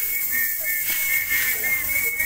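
Music for an Akamba traditional dance: a high whistle blown in a run of short, repeated blasts over a beat that lands about once a second.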